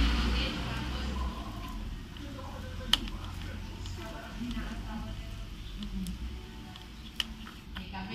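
Two sharp clicks about four seconds apart as a wire is worked into a small plastic wiring connector, over faint background voices.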